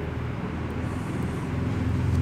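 Low, steady background rumble with a faint hum, growing a little louder near the end.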